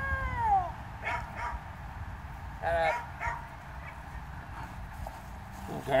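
Dutch shepherd whining in a high, falling tone at the start, then giving a couple of short barks while playing with her handler.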